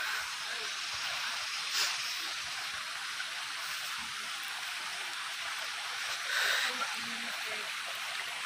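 A steady outdoor hiss of forest background noise, with two soft brief rustles, about two seconds in and about six and a half seconds in.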